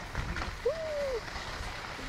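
Skis sliding and scraping over packed snow, with a low rumble from movement. A little after halfway there is one short rising-and-falling vocal sound.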